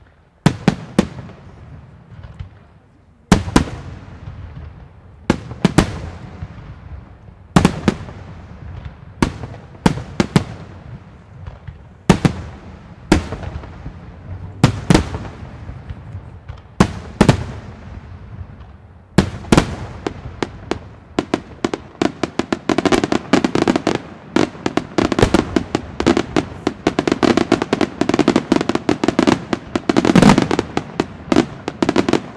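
Aerial firework shells bursting with sharp bangs, often in pairs, every second or two, each followed by a fading crackle. About nineteen seconds in, the reports turn into a dense, rapid barrage of bangs and crackling that thickens toward the end.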